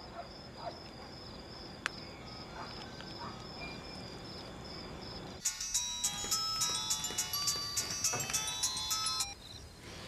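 A faint hum with a few soft clicks, then about halfway through a mobile phone plays an electronic melody ringtone for about four seconds before it stops.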